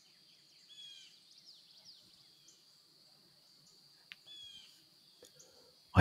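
Faint songbird calls from a nature-sound bed: two short warbled calls, about a second in and again just past four seconds, with a few small chirps between. A steady faint high-pitched drone runs beneath them.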